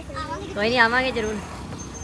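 Speech while people say goodbye, with road traffic running underneath from a motorbike passing on the street.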